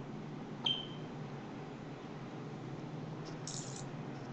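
A sharp click with a brief high-pitched ring about two-thirds of a second in, and a short hiss near the end, over a low steady hum.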